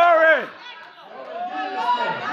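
Worshippers' voices calling out in a church hall: a long, drawn-out shout that rises and falls at the start, then, after a short lull, more overlapping exclamations.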